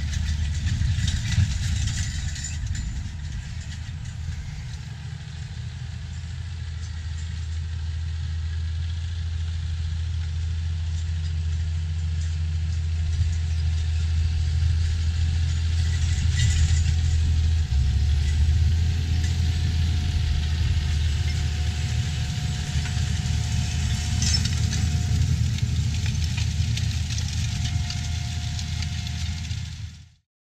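John Deere 7830 tractor's six-cylinder diesel engine running steadily under load, pulling a corn planter, as a low drone. It dips a little early on, then grows louder as the tractor comes nearer. The sound cuts off at the very end.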